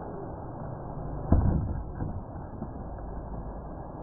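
Radio-controlled monster truck tumbling on packed dirt: one loud thump about a second in as it slams into the ground, followed by a couple of lighter knocks as it rolls.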